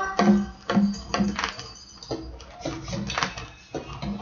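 A Brazilian folk record playing on a turntable through a hi-fi speaker: a percussion-only passage of drum strokes and sharp rattling hits, about two a second, with quieter gaps between.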